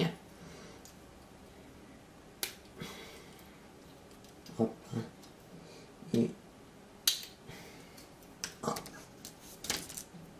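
Scattered small clicks and taps, about ten of them at irregular intervals, from plastic model-kit parts and hobby tools being handled on a table during cutting and gluing.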